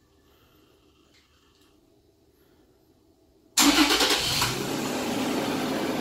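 2014 Toyota Tacoma's 4.0-litre V6 started by a remote starter: after about three and a half seconds of near silence it starts suddenly and loudly, then settles within a second into a steady idle.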